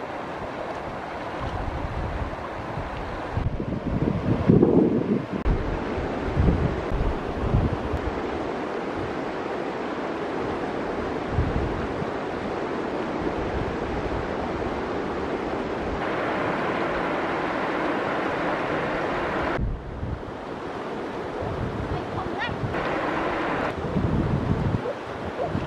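Shallow river water running over stones, a steady rushing wash, with wind rumbling on the microphone in gusts that are strongest about four to eight seconds in.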